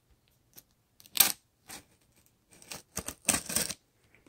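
Utility knife cutting the packing tape on a cardboard shipping box: a series of short scratchy rasps, the loudest about a second in and a quick run of them near the end.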